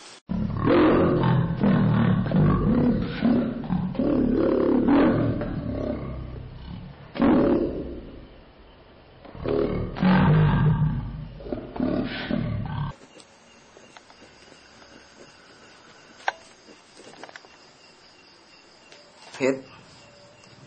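Loud roaring, growling vocal sounds in a run of bursts for about thirteen seconds, cutting off abruptly, followed by low background noise with a single sharp click a few seconds later.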